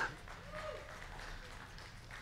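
Faint applause from a church congregation, with a short call from one voice about half a second in.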